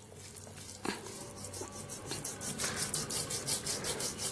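Palm scrubbing a gritty crushed-aspirin paste in circles over the back of a hand: a scratchy rubbing in quick, even strokes, several a second, that grows louder from about a second in.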